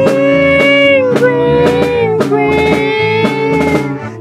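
Norteño band playing an instrumental passage between sung lines: the accordion holds and slides a melody over the twelve-string bajo sexto, electric bass and a drum kit keeping a steady beat.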